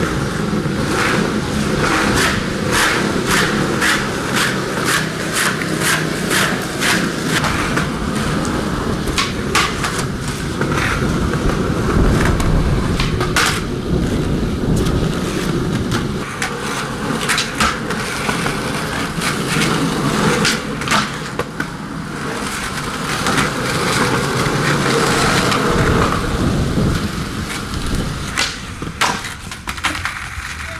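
Skateboard wheels rolling on asphalt, a continuous rumble, with many sharp clacks and slaps of the board against the ground.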